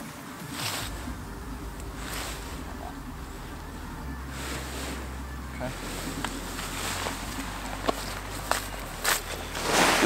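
Faint rustling of a paraglider's nylon wing and lines as they are handled and braided, a few brief swishes over a steady low rumble.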